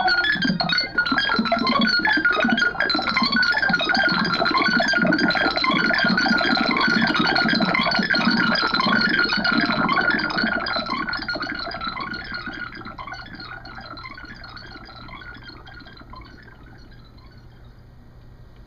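Live improvised electronic music from a hardware sequencer and mixer: a fast, dense, noisy sequenced pattern that fades out over the second half.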